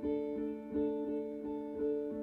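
Live band playing the slow instrumental intro of a ballad: electric guitar picking single notes about every half second over steady held chords.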